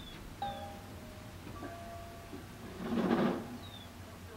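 Steel gas cylinders clinking and ringing as they are handled in an exchange cage, heard from inside a parked car: two knocks that each ring on briefly, about half a second in and again about a second and a half in. A louder clatter follows about three seconds in.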